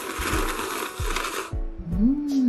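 A person slurping spicy instant cup ramen (Mōko Tanmen Nakamoto) straight from the cup, one loud slurp lasting about a second and a half.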